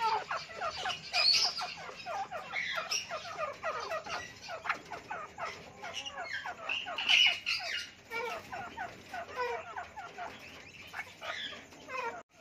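Grey francolins and their small chicks calling: a fast, continuous run of short, falling chirps, with a few louder calls standing out about one second and seven seconds in.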